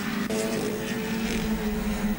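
Racing saloon car engines running at a steady pitch as the cars take a corner.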